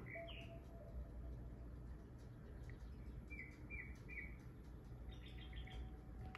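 A small bird chirping faintly: a short chirp at the start, three quick chirps in a row in the middle, and a fast little run of chirps near the end, over a low steady room hum.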